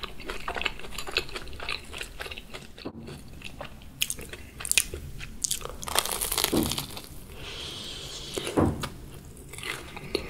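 Close-miked crunching and chewing of a crispy fried Korean corn dog. There is a loud crunchy bite about six seconds in, followed by quieter chewing.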